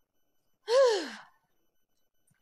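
A single short vocal sound from a person, breathy, with its pitch falling steeply, about two-thirds of a second in.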